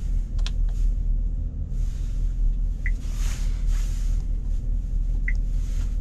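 Steady low rumble inside a van's cabin. A few light clicks come in the first second, and two short high beeps, about three and five seconds in, come as the dashboard touchscreen's buttons are pressed.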